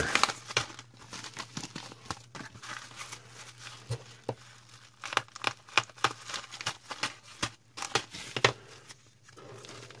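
Plastic mailer bag and foil anti-static bags being torn open and handled, in irregular crinkles, rustles and crackles.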